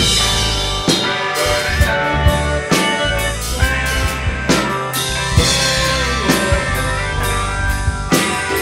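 Amateur rock band jamming live: electronic keyboard and electric guitar over drums, with a strong drum hit about once a second.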